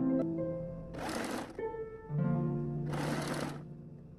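Electric domestic sewing machine stitching in two short runs, each under a second, about two seconds apart, over background music of plucked string notes.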